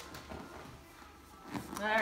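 Quiet room with a few faint soft knocks and rustles as hands slide under a person's shoe heels on a padded treatment table; a woman's voice starts up near the end.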